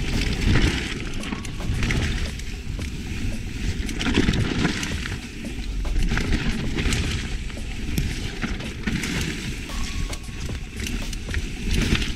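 Mountain bike descending fast on a damp dirt berm trail: continuous tyre noise on the soil, with many sharp clicks and rattles from the chain and bike over bumps, and wind rushing over the chest-mounted action camera's microphone.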